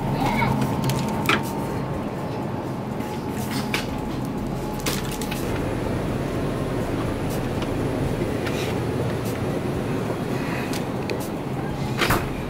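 Steady hum and rumble of supermarket background noise, with a scattering of short knocks and clicks from goods being handled at a refrigerated case.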